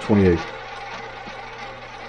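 Rotor of a double-zero roulette wheel spinning on after the ball has come to rest, a steady low whir.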